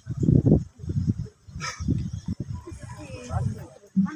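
Onlookers talking close to the microphone, overlapping voices in indistinct chatter.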